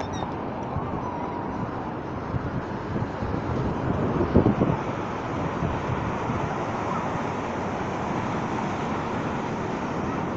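Heavy Atlantic surf breaking on a rocky shore, a steady roaring rush of waves that swells louder briefly about halfway through, with wind buffeting the microphone.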